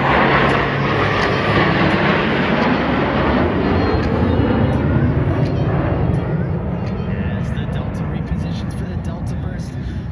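Six F-16 Fighting Falcon jets flying past in formation: a loud jet noise that falls steadily in pitch over the first several seconds as they pass, then eases off slightly near the end.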